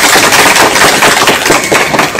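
A loud, dense rattle of rapid sharp cracks, steady in level, ending just after two seconds.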